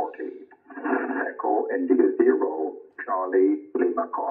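Single-sideband voice from an HF amateur radio receiver: a ham operator calling CQ DX on 40 metres, heard as thin, narrow-band speech through the Yaesu FT-710's speaker, with the radio's digital noise reduction switched on at level 6.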